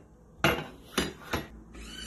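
Metal water bottle knocking against the sorter's plastic bin as it is put in: three knocks, the first the loudest. Near the end a whine starts as the sorter's motor moves the item toward the recyclables side.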